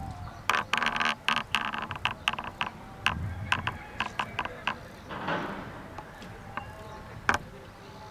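A quick, irregular run of sharp clicks and taps for the first few seconds, then a few single clicks.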